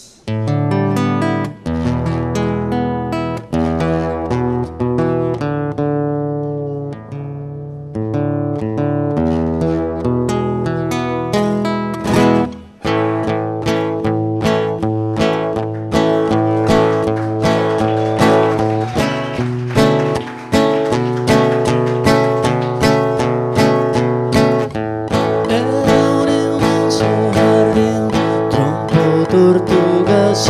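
Solo acoustic guitar opening a song: picked notes and chords at first, then fuller, steadier strumming after a short pause about twelve seconds in. A man's singing voice comes in near the end.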